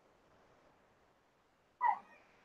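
Near silence on the call line, then one short, faint voice-like sound near the end.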